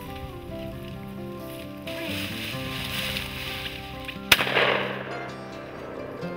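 Background music plays throughout; a little over four seconds in, a single shotgun shot cracks out, the loudest sound, trailing off over about half a second.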